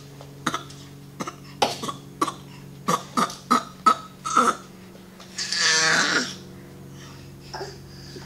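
A person coughing: a string of about nine short hacks, then one longer, louder rasping cough about two-thirds of the way through.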